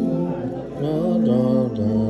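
A group of men and women singing a slow song together, unaccompanied, their held notes stepping from one pitch to the next about every half second.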